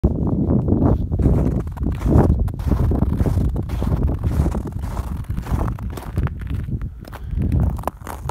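Footsteps crunching on snow, with irregular crunches and scuffs over a steady low rumble of wind on the microphone.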